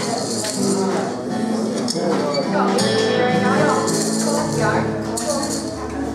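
A small acoustic folk band getting a song going: accordion chords held from about three seconds in, with an upright double bass coming in underneath a moment later. Acoustic guitar and jingling hand percussion, with voices talking over the start.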